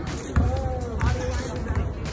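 People talking over background music with a steady thumping beat.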